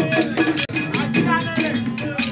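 Percussion music with a bell and drums keeping a quick, steady beat. The sound breaks off for an instant about two-thirds of a second in.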